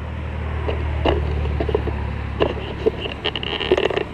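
Highway traffic: a steady low rumble of passing cars that swells about a second in, with scattered light scrapes and clicks close to the microphone.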